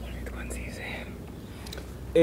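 Faint whispering voice, soft and without voicing, over a low steady hum.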